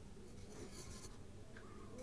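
Pencil writing a number on a paper workbook page: faint scratching of the pencil lead on paper.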